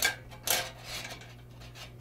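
Plastic roll spindles being handled in a metal toilet tissue dispenser cabinet: two sharp knocks, one at the start and one about half a second in, then faint rubbing.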